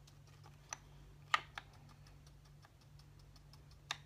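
Irregular light clicks and taps of small hard objects being handled, with a sharper click about a second and a half in and another near the end, over a faint low hum.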